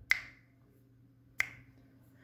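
Two short, sharp clicks about a second and a quarter apart, each dying away quickly, over a faint low hum.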